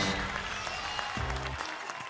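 Studio audience applauding over upbeat game-show music, both fading down.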